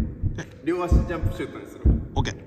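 Heartbeat sound effect: deep double thumps about once a second, building tension, with a man talking over it.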